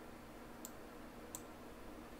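Two faint computer mouse clicks about 0.7 seconds apart, over a low steady room hiss.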